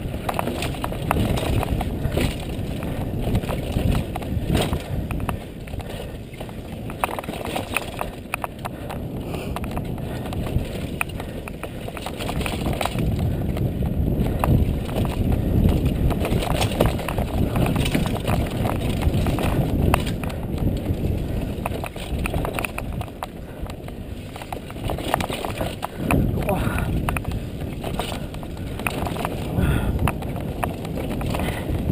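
Downhill mountain bike descending a rough dry dirt trail: tyres rumbling over dirt, roots and rocks, with constant rattling and knocking from the bike over the bumps and a heavy low rush of air on the camera microphone.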